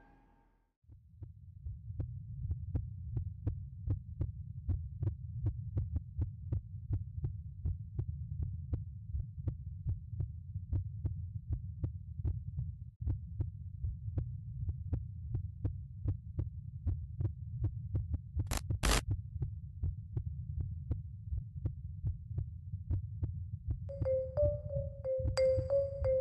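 Suspense sound design for a short film: a low throbbing drone with sharp ticks about twice a second, heartbeat-like. About three-quarters of the way through, two short sharp sounds stand out.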